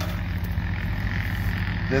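Steady low machine hum, even and unchanging, with a faint hiss above it.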